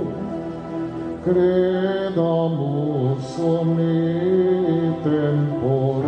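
Slow devotional hymn being sung, with long held notes that change in steps.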